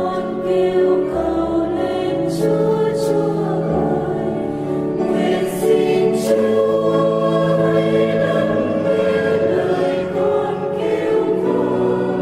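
A choir singing a slow Vietnamese Catholic psalm setting, the voices holding long notes in steady phrases.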